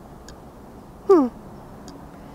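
A woman's brief "hmm" falling in pitch about a second in, over low steady background noise.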